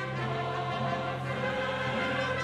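A mixed choir singing with an ensemble of strings and brass, over a held low note.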